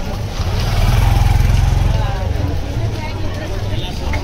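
A low engine rumble that swells in the first half and fades after about two seconds, over the chatter of a crowd.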